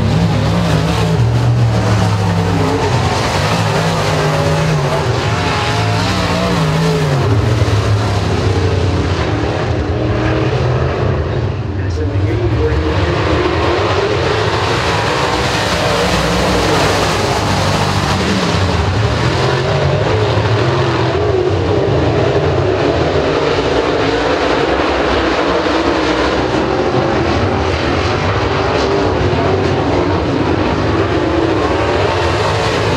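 UMP Modified dirt-track race cars running at speed in a pack, their V8 engines loud and continuous, pitch rising and falling as they accelerate and back off. The sound dips briefly about twelve seconds in.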